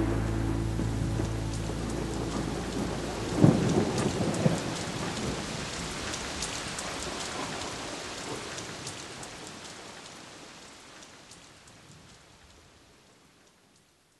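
Rain with a rumble of thunder about three and a half seconds in and scattered crackles, the whole fading out steadily to near silence by the end.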